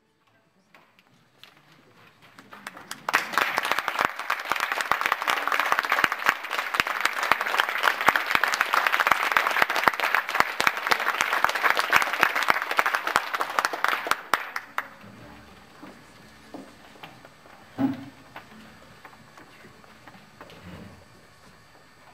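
Audience applauding, building up over the first few seconds, then cut off abruptly about two-thirds of the way through. Quieter room noise follows, with one soft thump.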